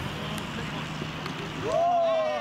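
Open-air ambience with a low steady hum, then near the end a loud, long drawn-out shout from one voice that rises and falls in pitch as an attacker breaks towards goal.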